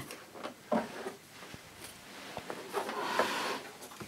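Hands handling the plastic body of a cylinder vacuum cleaner and its mains lead: a sharp knock about three-quarters of a second in, then faint clicks and rustling.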